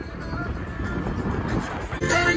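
Wind and road noise rushing past a phone held out of a moving car's window, with music playing faintly underneath.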